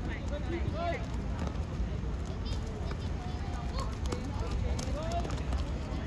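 Scattered shouts and calls from children playing football and the adults watching, heard as short high-pitched voices over a steady low background rumble.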